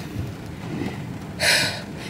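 A woman's short, audible breath about a second and a half in; she is still out of breath from a workout. Under it is a steady low rumble of a car interior.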